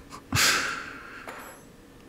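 A man's short breathy exhale, a laugh through the nose, that starts suddenly and fades over about a second.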